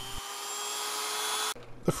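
Dremel rotary tool with a cutoff wheel running against a steel screw that is being shortened: a steady high whine with a hiss over it, creeping slightly up in pitch, that stops abruptly about a second and a half in.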